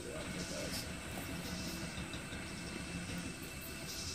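Engine of a large truck rig running as it drives slowly past, a steady low rumble that doesn't sound really good.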